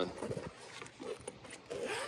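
Zipper on a soft fabric tool case being pulled open by hand, a run of short, irregular rasping clicks.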